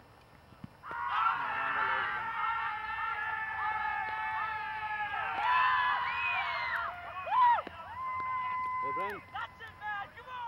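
Cricket fielders shouting together as a wicket falls: several overlapping yells start about a second in and go on for about six seconds, followed by one loud shout and then a single long, held call near the end.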